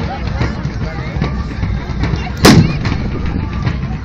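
A single very loud gunpowder bang about two and a half seconds in, ringing out briefly, over the noise of a running crowd.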